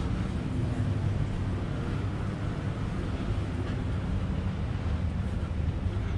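Steady low mechanical hum with wind rumbling on the microphone, the outdoor background on the deck of a moored yacht.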